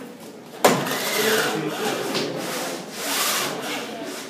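Roll-down projection screen being lowered over a whiteboard: a sharp clack about half a second in, then about three seconds of rubbing, scraping noise as the screen unrolls.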